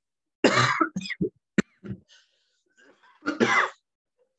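A man coughing and clearing his throat: a loud cough about half a second in, a few short throat-clearing sounds after it, and another cough near the end.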